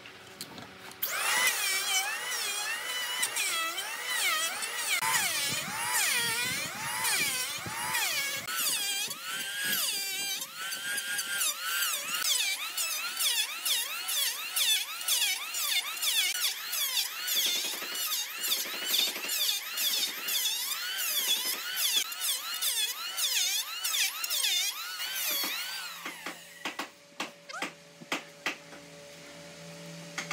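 Electric hand planer shaving the top of a tree trunk, its motor whine dipping and rising again and again as the blades bite and run free on each pass. It starts about a second in and stops about four seconds before the end.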